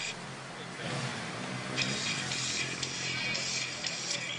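Movie soundtrack music playing back through the Motorola Droid X's small built-in speaker, with a break of about a second and then a denser, brighter stretch that continues from about two seconds in.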